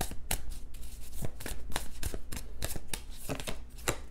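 A tarot deck being shuffled by hand: an irregular run of many crisp card flicks and snaps.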